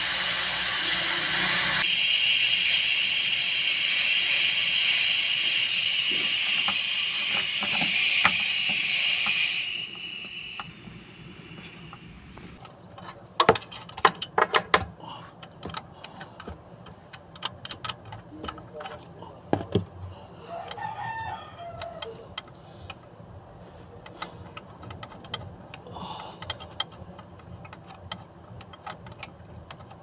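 Freon refrigerant vented from a Hyundai Coaster's air-conditioning system through the manifold gauge hoses: a loud, steady hiss that eases slightly about two seconds in and dies away about ten seconds in as the system empties. Afterwards there are scattered sharp metallic clicks and knocks of hand tools working on the AC compressor, which is being removed to replace its failed magnetic clutch coil.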